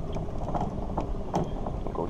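Fishing reel being cranked during a lure retrieve: a steady mechanical whir from the reel's gears, with a few sharp clicks.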